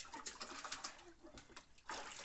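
Water splashing and sloshing in a large plastic tub as a small child is bathed by hand, with a louder splash near the end. A brief low coo about a second in.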